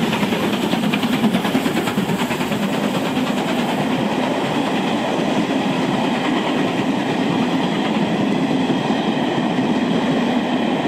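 Steam-hauled train of 2-6-4T tank locomotive No. 4 and its Cravens coaches passing by, giving a steady rumble of wheels on the rails.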